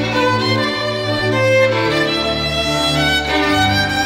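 Classical music played by bowed strings: held low notes that change pitch about halfway through and again near the end, under a higher violin line.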